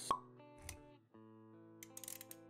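Intro music with held notes, punctuated by a sharp pop just after the start, the loudest sound, and a soft low thud a little after half a second; the music dips briefly around the one-second mark and resumes, with a few quick clicks near the end.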